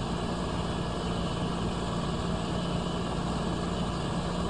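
An engine idling with a steady, continuous hum.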